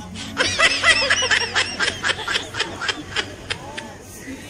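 High-pitched giggling laughter: a quick run of short rising-and-falling "hee" pulses, about six a second, that tails off over the last couple of seconds.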